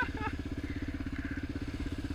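Yamaha Raptor 700R quad's single-cylinder four-stroke engine idling with a steady, even pulse.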